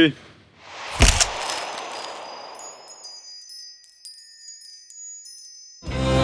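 Edited-in sound effect as the selfie is taken: a single sharp hit about a second in, then a fading swish and a sparkle of high, tinkling chime tones.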